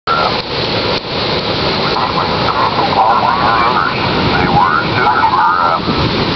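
Loud, steady rush of heavy storm-surge surf and wind on the microphone. From about halfway, an indistinct voice wavers through the noise.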